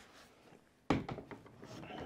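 A Traxxas Slash 4x4 RC truck turned over and set down upside down on a table. It lands with one thump about a second in, then gives a few faint knocks as it is handled.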